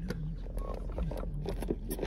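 Faint sipping through a straw from a plastic iced-coffee cup, with light clicks and scrapes of the cup and lid near the end, over a low steady hum.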